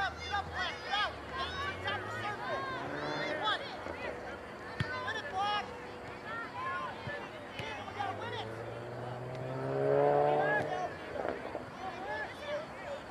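Distant shouts and calls from players and spectators across an open soccer field. A vehicle engine hums underneath and rises in pitch as it passes, loudest about ten seconds in.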